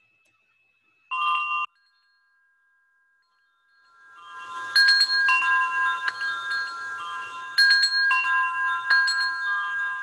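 Metal-tube wind chimes ringing, fading in about four seconds in and then struck in several clusters of overlapping, sustained notes. A brief tone sounds about a second in.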